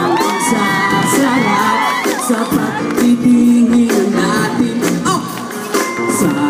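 Live pop song from a band with a singer, heard from within the audience, with crowd cheering and whooping over the music.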